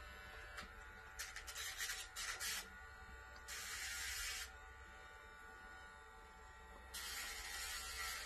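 Handheld Dremel rotary tool running with a steady whine, grinding a dog's toenails: several short rasps in the first half as the grinding drum touches the nail, then two longer rasps of about a second each, around four seconds in and near the end.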